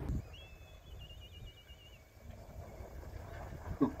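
A faint bird call: a short whistled note that breaks into a warbling trill, lasting about two seconds, over a faint low outdoor rumble.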